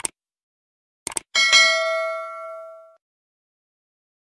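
Subscribe-button sound effect: a short click, then about a second later a quick double click followed by a bright bell ding that rings out and fades over about a second and a half.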